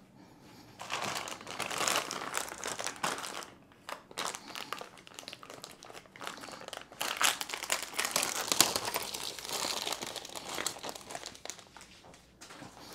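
Plastic packaging wrap being pulled off and crumpled by hand, an irregular crinkling that starts about a second in and eases briefly around four seconds.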